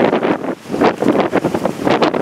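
Leaves and branches of a persimmon tree rustling as they are pulled about and fruit is picked, mixed with wind buffeting the microphone; loud and irregular.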